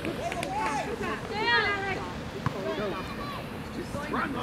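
Spectators and coaches shouting and calling from the sideline of a youth soccer game, the loudest call about one and a half seconds in, with one sharp knock about two and a half seconds in.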